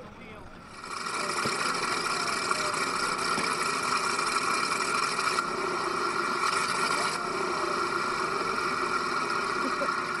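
A steady, engine-like running sound with a high whine cuts in about a second in and holds level.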